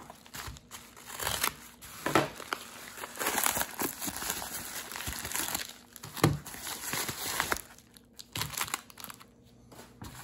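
Yellow bubble-lined paper mailer crinkling and rustling as it is handled and emptied, with some tearing and a few sharp snaps; it dies down near the end.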